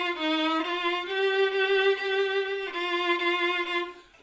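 Acoustic violin, bowed, playing a slow phrase of about five held notes, the longest in the middle, each with the continuous classical-style vibrato used on every note. The phrase stops near the end.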